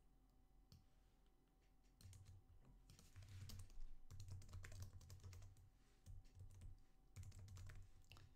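Faint typing on a computer keyboard: quiet for about two seconds, then a quick, irregular run of key clicks.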